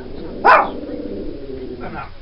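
A dog barks once, sharply, about half a second in.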